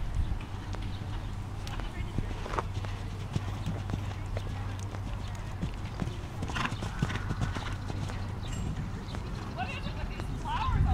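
Hoofbeats of a horse cantering on arena sand and jumping a small fence, heard as scattered soft knocks over a steady low rumble, with faint voices in the background.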